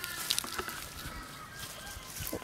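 Faint outdoor background of leafy garden plants rustling as they are handled, with a few light clicks and a faint drawn-out call in the distance during the first second or so.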